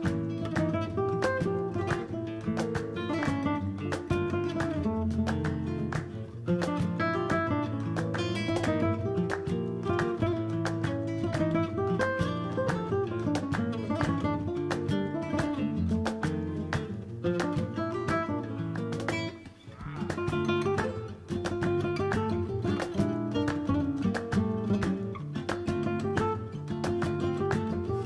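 Background music of flamenco-style acoustic guitar, quick runs of plucked notes and strums, with a brief drop in volume about three-quarters of the way through.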